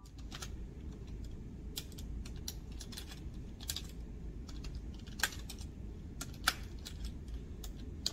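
Typing on a computer keyboard: irregular key clicks, with a couple of louder key strikes a little past the middle, over a steady low background hum.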